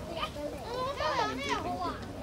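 Children playing and talking, with one high-pitched child's voice loudest in the second half.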